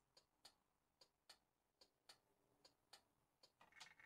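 Near silence, with very faint, evenly spaced ticking at about three or four ticks a second.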